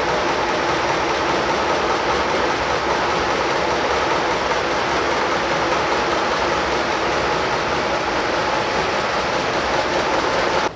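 Single-cylinder octane-rating test engine running steadily, with a rapid, even ticking over its mechanical noise.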